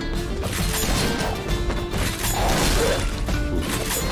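Soundtrack of an animated fight scene: music with crashing impact sound effects and the mechanical clicks of a gun-scythe weapon.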